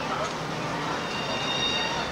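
A double-decker tour bus running, with a high, thin, steady squeal that comes in about a second in.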